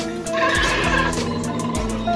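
Arcade game music with a steady beat. About half a second in, a brief high cry sounds over it for about half a second.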